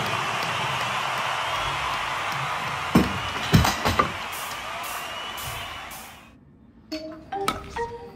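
A huge stadium crowd cheering and applauding at the end of a live rock song, which fades out about six seconds in. A few sharp close knocks come around the middle, and a short bright musical jingle starts near the end.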